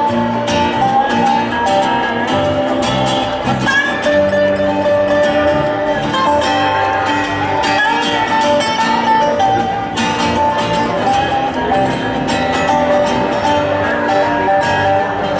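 Live acoustic string band playing a song, with picked acoustic guitar and upright bass under sustained melody notes.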